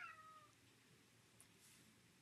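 A single short cat meow, about half a second long and falling in pitch, at the very start, followed by near silence.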